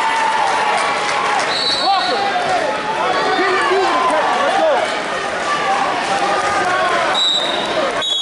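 Spectators and coaches shouting in a gymnasium during a wrestling bout, many voices overlapping at once. There is a thud about two seconds in, and a few short high squeaks.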